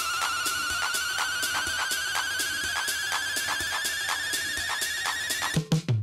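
Techno DJ mix in a breakdown: a high synth tone climbs slowly in pitch over steady hi-hat ticks, with no kick drum or bass. Near the end the rising tone cuts off and a few short low hits sound, leading into the drop.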